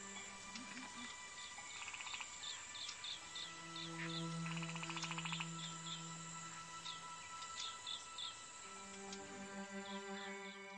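Quiet slow music with long held notes, with birds chirping over it again and again and two short rapid trills, about two and five seconds in.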